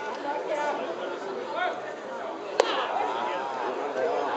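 A single sharp crack of a metal baseball bat hitting a pitched ball about two and a half seconds in, over spectators chattering in the stands.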